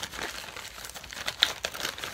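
Plastic-wrapped packs of cotton pads crinkling as they are handled, with one sharper crackle about one and a half seconds in.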